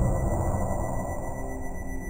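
Electronic music with steady held high tones over a low, dense layer, slowly getting quieter.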